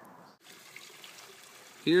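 Faint steady outdoor background hiss, with a brief dropout about half a second in where one recording cuts to another. A man's voice begins at the very end.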